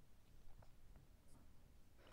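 Faint strokes of a marker pen drawing straight lines on a white writing surface.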